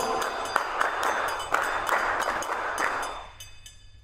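Many people clapping their hands, a dense patter with some sharper claps standing out, fading away about three seconds in.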